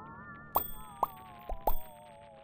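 Cartoon sci-fi sound effects: a wavering, warbling tone glides up and then slowly sinks, while four quick 'plop' pops land on top of it, the last two close together.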